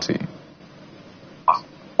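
A pause in conversation: a faint steady background hiss, with one brief vocal sound about a second and a half in, just before the reply begins.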